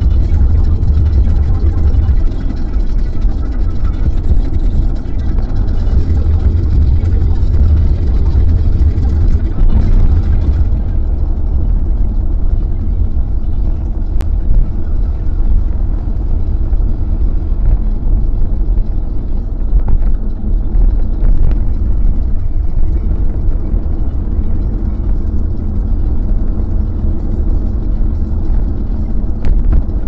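Steady low rumble of road and engine noise heard inside a Kia Carens cruising on the road, with a higher hiss that eases about a third of the way in.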